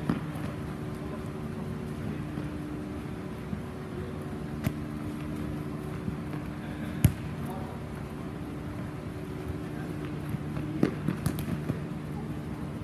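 Futsal ball being kicked and struck on an indoor pitch: sharp single knocks, the loudest about seven seconds in, and a quick cluster of knocks near the end. Under them runs a steady hum with faint players' voices.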